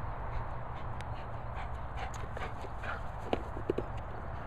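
German Shepherd mouthing and pushing a hard plastic play ball: a run of light knocks and clicks from about a second in, with a few louder, short knocks near the end, over a steady low rumble.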